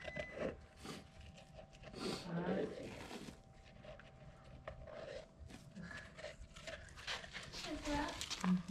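Scattered light metallic clicks and rattles as pushrods are handled and pulled from a rust-corroded LS V8 engine block, with a short stretch of low muttering about two seconds in and a faint steady whine underneath.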